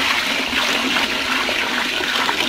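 Water pouring steadily from a stainless steel bucket into a basin.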